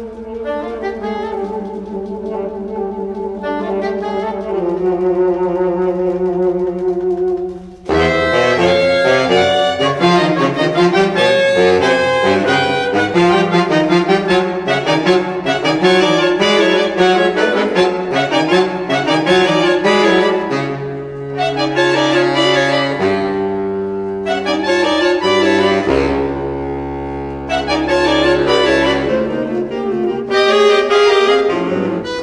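Saxophone quartet playing: held, softer chords for about eight seconds, then a sudden loud entry of fast, busy lines over sustained lower notes.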